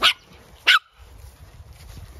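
A dog barking twice, two short sharp barks about two-thirds of a second apart.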